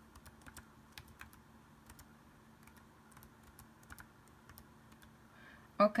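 Computer keyboard being typed on: a string of faint, irregular keystrokes.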